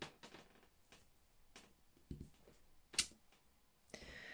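A few faint taps and clicks of a clear acrylic stamp block being pressed onto card on a wooden table and lifted off, the sharpest click about three seconds in.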